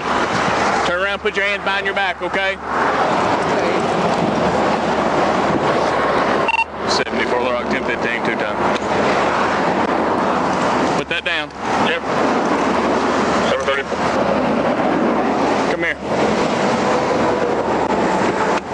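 Steady roar of highway traffic passing close by, with snatches of indistinct talking now and then.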